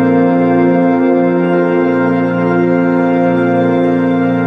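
Background music: one sustained organ-like chord held steadily, with no change.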